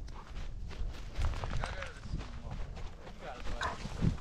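A border collie moving over snow with a camera mounted on its harness: its footfalls and scattered knocks of the harness and mount, over a constant low rumble of handling noise on the microphone.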